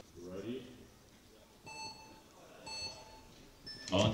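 Electronic start signal of a speed-climbing race: two short beeps about a second apart, then a shorter, higher beep just before the end that starts the race.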